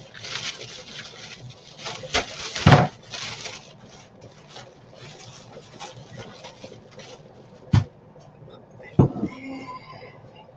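A plastic bag rustling as celery is wrapped and put away, with four knocks of things being set down; the loudest knock comes about three seconds in.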